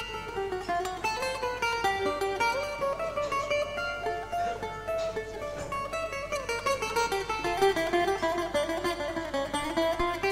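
Bouzouki playing a rebetiko melody, a quick run of plucked notes stepping up and down.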